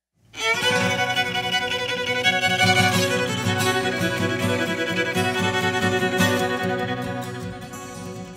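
Fiddle starting a fast bowed tune suddenly out of silence about a quarter second in, playing a quick run of notes without a break.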